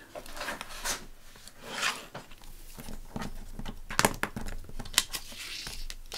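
Paper and a clear acrylic quilting ruler being handled and slid about on a cutting mat: rustling swishes with a few sharp clicks and taps, the sharpest about four and five seconds in.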